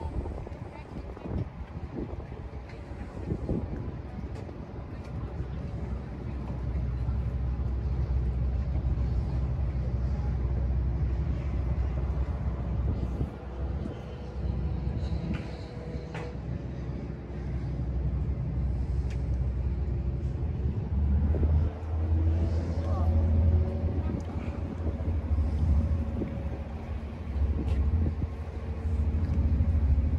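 Low, steady engine rumble of a small river car ferry under way. It grows louder about two-thirds of the way through as its pitch rises.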